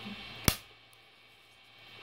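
A single sharp click about half a second in, from a hand at the base of a 3D-printed plastic figure on the printer's build plate, followed by near silence.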